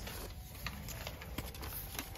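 Paper envelope being handled and opened, with faint rustling of paper and a few light clicks.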